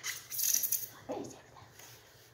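A ceramic coffee mug being worked out of its tight styrofoam packing insert, the foam scraping and squeaking against the mug for about the first second. A brief vocal sound follows about a second in.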